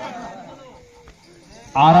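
Faint voices from around the court, one of them sliding down in pitch, then a quieter moment. Near the end a man's commentary voice starts suddenly and loudly.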